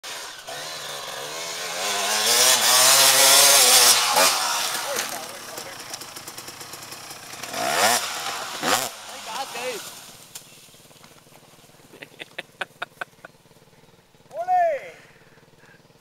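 Dirt bike engine revving hard under load on a steep dirt hill climb, its pitch climbing over the first few seconds, then two sharp revs as the bike goes down, after which the engine fades out about ten seconds in. A run of light clicks follows, and a short call near the end.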